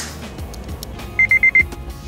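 Warning chime of a 2007 Honda Civic Si beeping four times in rapid succession, high and evenly pitched, about a second in, over background music.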